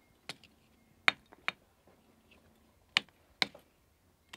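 Hard pieces clicking and tapping as a hand sorts through charcoal and ash on a stone hearth: about five sharp, separate clicks at uneven intervals.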